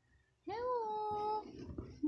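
A baby's cry: one drawn-out wail that starts about half a second in, rises briefly, then holds a steady pitch for about a second before breaking off.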